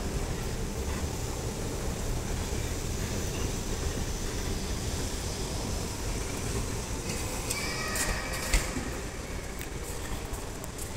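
Hyundai S Series escalator running: a steady low rumble and hum from the moving steps and drive. Near the end come about a second of high squeaking and clicking and a single thump.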